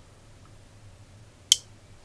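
Two relays on a 4-channel Wi-Fi relay module switching off together in answer to an "all switches off" command: one sharp click about one and a half seconds in.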